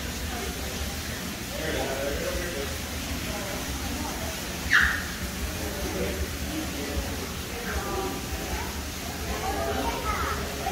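Indistinct chatter of other people in the background over a steady low hum. About five seconds in, a short, sharp high-pitched squeal stands out as the loudest sound.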